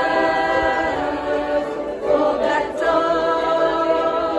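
A large group of voices singing together, holding long notes and moving to new notes every second or so, like a choir.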